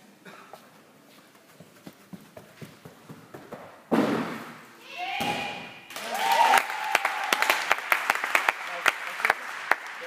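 Men's vault in a gymnastics hall: light footfalls of the run-up, then loud thuds of the springboard takeoff and landing about four seconds in. Spectators then shout and clap in applause.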